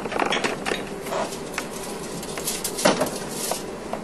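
Scattered light clicks and knocks of kitchen handling as a dish is put away in a refrigerator, the loudest knock about three seconds in.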